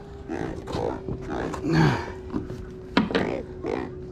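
A large catfish croaking out of the water in a landing net: a run of short raspy grunts, made by working its pectoral spines, with a faint steady hum underneath.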